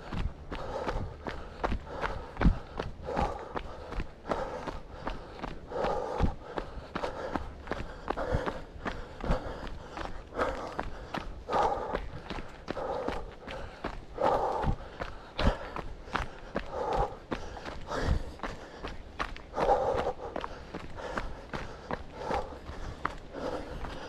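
Footsteps of a person jogging on a packed dirt-and-gravel forest trail: a steady, even stride of footfalls.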